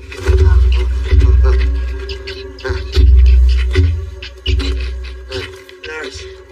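Dramatic film soundtrack: deep booming hits at irregular intervals over a low held drone, with scuffling noises of a struggle.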